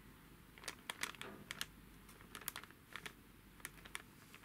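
Faint, irregular light clicks and taps, about a dozen, with a little crinkle, from fingers handling a cellophane bag of faceted plastic gems.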